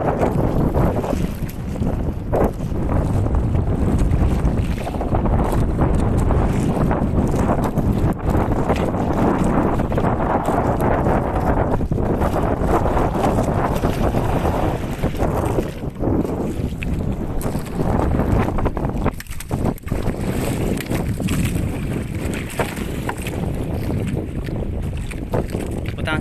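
Loud, steady rumbling and rushing noise aboard a small outrigger fishing boat at sea, the kind made by wind and sea buffeting the microphone.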